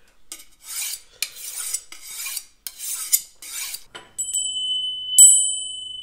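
A steel knife scraped in about seven quick strokes along a sharpening steel. A small brass hand bell then rings: a faint first ring, then a louder strike about a second later that rings on and slowly fades.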